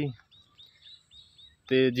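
Several faint, short high bird chirps in the open field, heard between a man's words at the start and again near the end.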